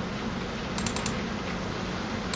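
Computer mouse button clicked a few times in quick succession, over a faint steady low hum.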